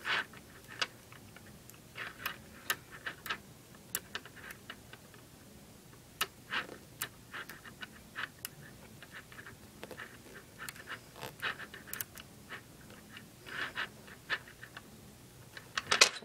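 Small neodymium magnet balls clicking and snapping together as a string of them is wrapped around a bead ball, with soft handling rustle; light clicks come at irregular intervals, several close together at times.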